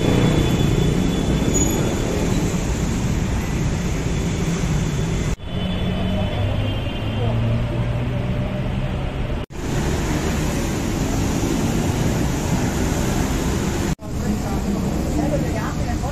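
Steady road traffic noise with indistinct voices in the background. The sound drops out briefly three times.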